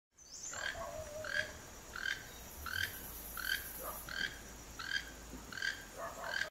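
Toco toucan giving its repeated croaking call, one short call roughly every 0.7 seconds.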